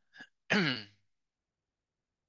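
A man clears his throat: a short catch, then a longer voiced clearing with falling pitch, all within the first second.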